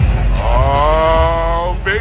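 Loud, long drawn-out "Moooo" cheer for Mookie Betts, held for about a second and a half and rising slightly in pitch. A short rising call follows near the end.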